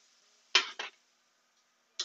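A metal spatula scraping and clinking on a griddle as shrimp are slid off it: two quick strokes about half a second in.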